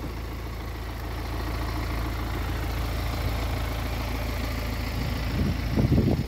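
An idling engine: a steady low rumble that holds level and drops away abruptly at the end.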